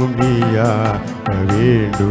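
A Tamil church hymn sung by a solo voice with instrumental accompaniment: a gliding sung melody over steady held notes and a light percussion beat about four times a second.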